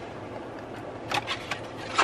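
Steady low hum inside a car, with a few short, crisp clicks a little after a second in and again near the end.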